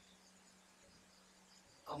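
Near silence: room tone with a faint steady low hum, then a voice starts just before the end.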